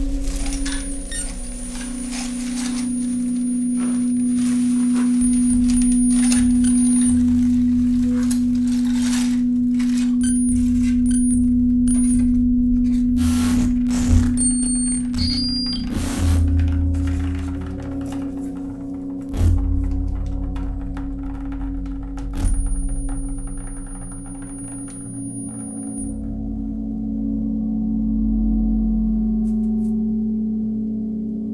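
Experimental electro-acoustic improvised music: a sustained low drone under scattered sharp clicks and knocks, with a thin high sine-like tone held for several seconds near the start and again past the middle. Near the end the drone shifts lower and swells.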